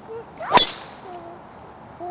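A driver striking a teed golf ball: a brief rising swish of the club, then one sharp crack at impact about half a second in.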